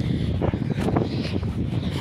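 Wind buffeting the microphone, a steady low rumble.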